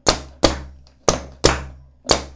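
Pneumatic cylinders on a compressed-air training panel cycling back and forth under relay and timer control, knocking sharply at the ends of their strokes. The knocks come in pairs about half a second apart, a pair about every second, each knock trailing off quickly.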